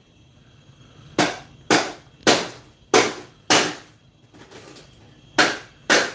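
Seven sharp, irregularly spaced impacts, each fading over a fraction of a second, with a pause of about a second and a half before the last two.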